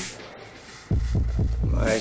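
Electronic industrial dance music without vocals: a sharp hit, a brief lull, then a loud deep bass throb coming in about a second in with a quick run of heartbeat-like pulses, and a rising sweep near the end.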